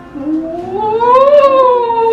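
A long, drawn-out howl-like cry that rises in pitch, peaks about one and a half seconds in, then slowly falls, over quiet background music.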